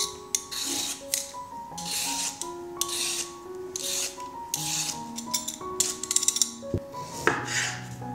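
Y-shaped metal vegetable peeler scraping the skin off a raw carrot in repeated strokes, about one a second.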